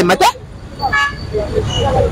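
A short vehicle horn toot about a second in, over low street-traffic rumble.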